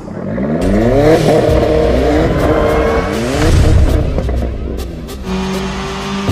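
A car engine revving up twice, its pitch climbing each time, with a rush of noise between, mixed with background music.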